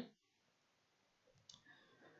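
Near silence, with a single faint click about one and a half seconds in: the click that advances the lecture slide.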